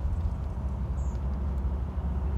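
A steady low background rumble with no speech.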